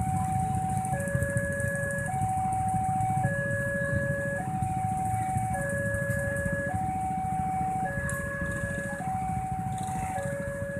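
Level-crossing warning bell sounding its repeating two-tone alarm, a higher tone then a lower tone, each about a second long, cycling steadily. Under it runs the low idle of waiting motorcycles.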